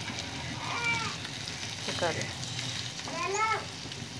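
Mutton pieces frying in a little oil on a hot tawa, giving a steady low sizzle. Several short pitched sounds stand out above it.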